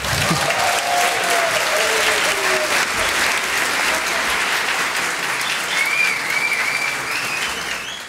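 Audience applauding after a piece ends, with a few voices calling out over the clapping. The applause cuts off abruptly at the end.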